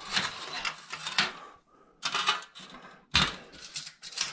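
Metal chrome trim strips clattering and scraping as they are handled and shifted on a stone countertop, in several short bouts, with a sharper knock a little after three seconds in.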